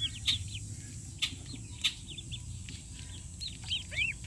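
A brood of Welsh Harlequin ducklings with a White Chinese gosling peeping: short, high, arched peeps, several each second, with a few sharp clicks among them.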